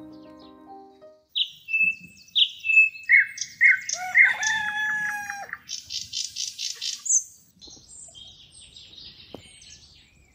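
Songbirds singing in bursts of clear whistled notes and quick trills. A rooster crows once about four seconds in. The singing thins to scattered, quieter chirps for the last couple of seconds.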